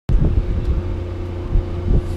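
Wind buffeting the microphone, an uneven low rumble, with a faint steady hum underneath and a few soft knocks.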